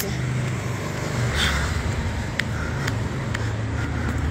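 Street traffic: a steady low rumble of passing motor vehicles, with a few faint clicks.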